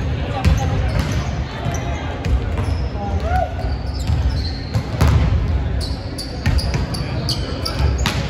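Volleyballs being hit and bouncing on a hardwood gym floor: repeated sharp slaps and bounces, several a second, echoing in a large hall.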